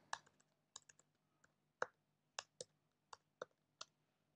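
Faint computer keyboard typing: about ten short key clicks, irregularly spaced.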